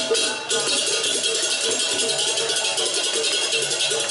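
Balinese gamelan ensemble playing Barong-dance music: metal gongs and metallophones struck in a steady pulse, with crashing cymbals that drop out about half a second in.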